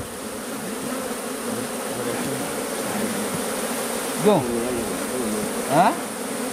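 Honeybees buzzing steadily over an opened top-bar hive full of honeycomb. Two brief, louder rising tones come near the end.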